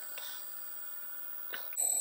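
Quiet bench with a faint, steady high-pitched whine from the small inverter-driven motor running at a set 600 rpm.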